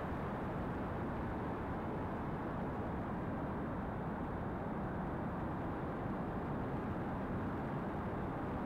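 Steady background noise: a low, even rumbling hiss with no distinct events.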